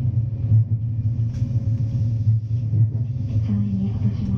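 Electric train running, a steady low rumble of motors and wheels on the rails heard from inside the driver's cab.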